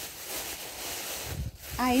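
Thin clear plastic bag crinkling and rustling as it is pulled off a tray and crumpled up by hand.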